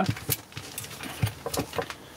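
A few light clicks and knocks of a coiled metal shower hose and other stowed items being handled and pulled out of a small storage cupboard.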